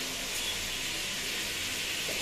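Food frying in a kadai on a gas stove: a steady sizzling hiss.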